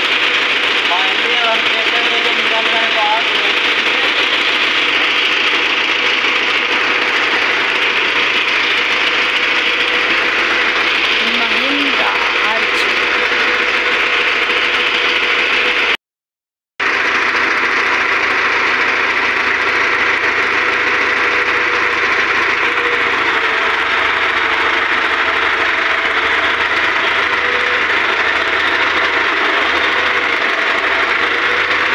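Mahindra Arjun 605 DI tractor's four-cylinder diesel engine idling steadily, with faint voices in the background. The sound drops out briefly a little past halfway, then the engine carries on.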